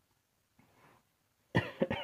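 A man coughing, two or three short, sharp coughs in quick succession about one and a half seconds in.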